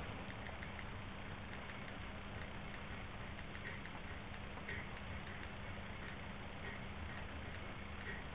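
Faint, irregular ticks of an iPod Touch's on-screen keyboard clicking as a Wi-Fi password is typed, over a steady faint background hum.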